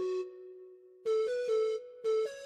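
Background film music of held synthesizer keyboard notes; it drops out about a quarter second in and comes back about a second in, stepping up and down between a few notes.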